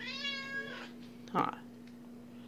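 Orange tabby cat giving one drawn-out meow of just under a second, demanding to be picked up.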